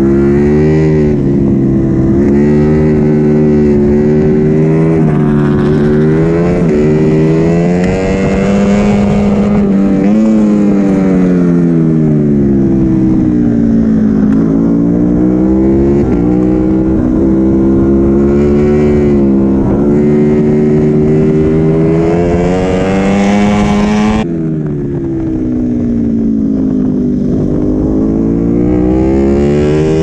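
Ducati Panigale V4 S's 1103 cc V4 engine heard onboard at racing speed, its note climbing and falling over and over with the gear changes and throttle through the corners. About three-quarters of the way in the throttle shuts abruptly and the revs drop, then build again.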